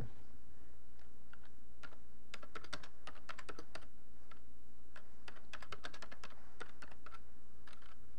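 Typing on a computer keyboard: irregular keystrokes in quick runs, with short pauses between them. A steady low hum runs underneath.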